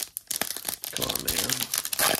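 A Topps Chrome trading-card pack wrapper being torn open by hand, with a dense run of crinkling crackles starting about a third of a second in.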